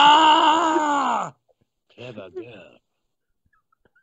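A man imitating a dinosaur roar with his voice: one loud, drawn-out, wavering roar lasting just over a second that falls in pitch as it dies away, followed by a few soft voice sounds.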